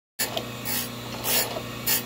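Surface grinder running with a steady motor hum while its abrasive wheel grinds hardened steel file blanks, a hissing rasp swelling about every two-thirds of a second as the wheel passes over the work. The sound cuts in suddenly just after the start.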